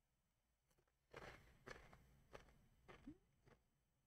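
Near silence: room tone with a few faint, short clicks and rustles.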